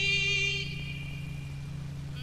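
Live rock band music: a high note held with a slight waver stops about half a second in, leaving a steady low drone.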